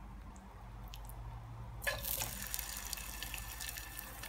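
Marinated chicken pieces being half-fried in shallow hot oil in a pan: after a faint first half, the oil starts sizzling suddenly about halfway through, a dense hiss with fine crackles.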